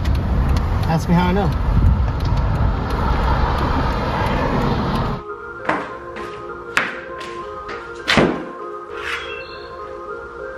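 Steady road noise inside a Jeep's cabin with a short voice, cut off about five seconds in by background music; over the music come several sharp knocks and thumps of plywood sheets being handled and laid down on a concrete floor, the loudest about eight seconds in.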